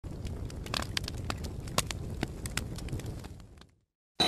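Irregular crackling clicks over a low rumble, fading out about three and a half seconds in.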